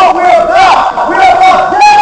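Several people shouting at once, loud raised voices overlapping with no pause.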